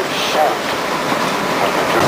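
Excursion train rolling along the track, a steady running noise of wheels and cars heard from aboard.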